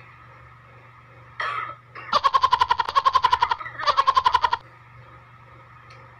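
A woman choking on a mouthful of food: a short cough, then two runs of rapid, high-pitched stuttering coughs and gasps, each lasting a second or so.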